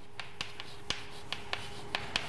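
Chalk writing a word on a blackboard: a handful of sharp, irregular taps and short strokes of the chalk against the board.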